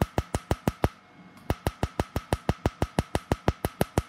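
Tattoo-removal laser handpiece firing rapid pulses onto tattooed skin: a steady train of sharp snapping clicks, about eight a second, with a brief pause about a second in.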